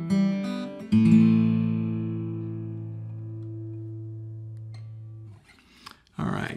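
Acoustic guitar: a few picked notes, then a chord struck about a second in that rings out and slowly fades for over four seconds before being damped, closing the song.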